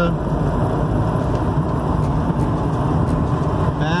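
Steady road noise inside a motorhome's cabin as it cruises on the highway: a low drone of engine and tyres with a hiss above it.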